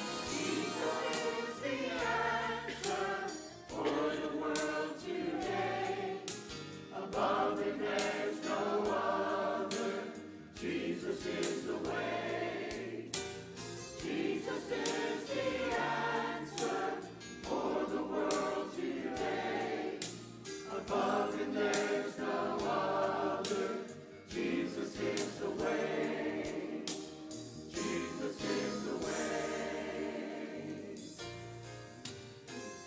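Church choir singing a gospel song in phrases, accompanied by a band with bass guitar, piano and drums.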